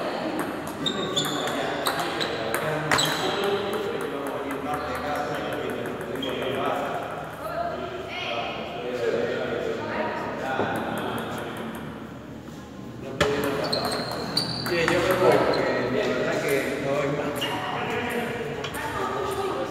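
Celluloid-type table-tennis ball clicking off paddles and the table in quick rallies, a string of sharp pings in the first few seconds and again later, over steady voices in a large hall.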